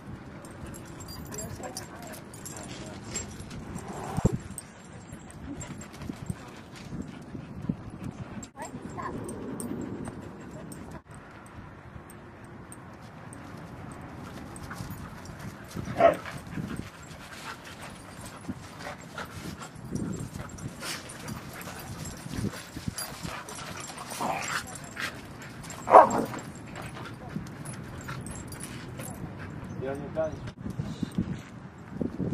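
Siberian huskies and other dogs playing, giving short yips and barks now and then, the two loudest about sixteen and twenty-six seconds in.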